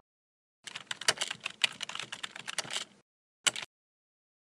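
Rapid typing on a computer keyboard: a dense run of keystrokes lasting about two seconds, starting just under a second in, then one short burst of clicks about three and a half seconds in.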